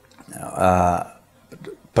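A man's voice holding a drawn-out hesitation sound, a single steady-pitched "eee" lasting under a second, as he pauses mid-sentence.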